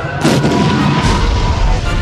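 Cartoon crash-and-explosion sound effect of a large wall section falling: a loud, noisy blast beginning a fraction of a second in, with a deep rumble that grows stronger toward the end.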